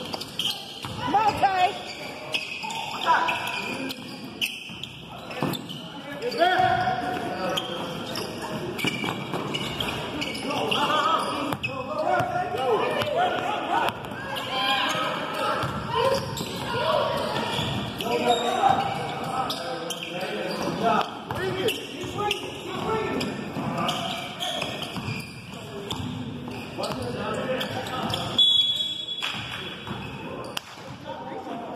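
A basketball being dribbled and bouncing on a hardwood gym floor during a game, under players and spectators calling out across the court. Near the end a short high steady tone sounds, fitting a referee's whistle.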